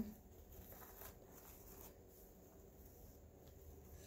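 Near silence, with faint rustling of ribbon being handled.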